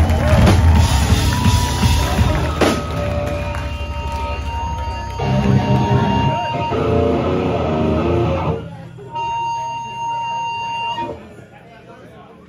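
Amplified electric guitars and bass ringing out loud and distorted with held amp-feedback tones for about eight seconds. Then a single steady feedback whine sounds on its own and cuts off suddenly about eleven seconds in.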